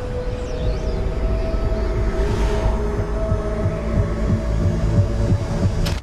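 Tense film score: held, sustained tones over a low, irregular throbbing pulse like a heartbeat. A single sharp crack comes just before the end, and the sound drops away after it.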